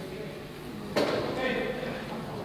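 A murmur of voices in a large, echoing hall, broken about a second in by one sharp slap or smack that rings on briefly.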